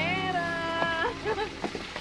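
A high-pitched, drawn-out vocal cry lasting about a second, rising and then slowly falling, followed by a few shorter, fainter cries.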